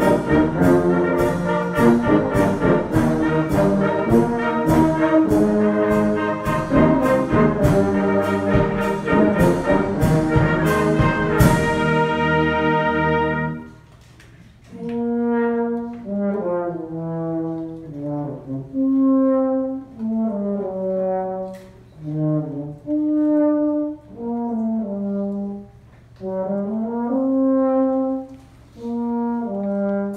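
Brass band of tubas, euphoniums and trumpets playing at full volume, with cymbal beats keeping a steady pulse of about two a second, and closing the phrase on a held chord about twelve seconds in. Then it drops to a much softer passage in which brass plays the melody in short phrases separated by brief pauses.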